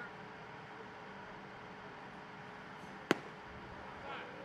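A pitched baseball popping into the catcher's leather mitt: a single sharp crack about three seconds in, over a steady low stadium background.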